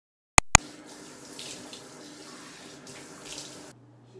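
Two sharp clicks, then a tap running steadily into a sink, which cuts off suddenly near the end.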